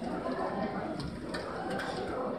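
Faint background chatter of voices in the room, with a few light clicks.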